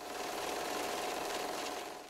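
Steady mechanical rattling-whirring sound effect with a faint steady hum, swelling in just after the start and fading near the end.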